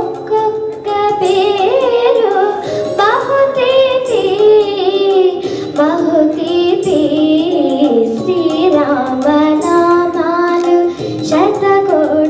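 A girl singing a Telugu film song into a handheld microphone in Carnatic style: long held notes with gliding, ornamented turns of pitch.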